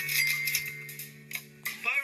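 A short music sting: one steady held note with a quick run of ticking hits over it. It cuts off just before the end, where a voice starts.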